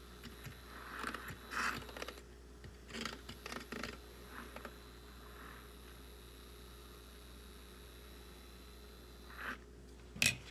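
Handheld battery milk frother whirring quietly in a mug of coffee with creamer, with a few light knocks and rustles in the first four seconds.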